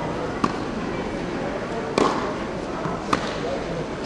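Tennis ball being hit in a practice rally: three sharp pops about a second and a half and then a second apart, the middle one the loudest. A steady murmur of people chatting in a large hall runs underneath.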